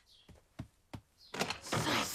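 Anime sound effects: three soft steps on a wooden floor, then from about halfway a louder sliding door rolling open.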